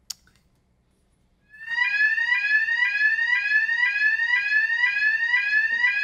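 A fire alarm sounder, played to a room as a demonstration, sounding a loud electronic tone in rising sweeps about twice a second. It starts about a second and a half in, after a single click.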